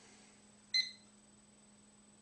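Digital stopwatch timer giving a single short electronic beep about three-quarters of a second in as its start button is pressed, starting the timing of a breath hold. A faint steady hum runs underneath.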